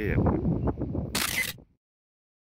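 A camera shutter sound, a short hissy snap about a second in, after a man's brief exclamation and a few handling knocks; then the sound cuts off abruptly to dead silence.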